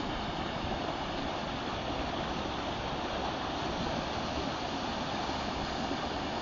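Water rushing steadily over a low weir and small waterfall, an even, unbroken white-water sound.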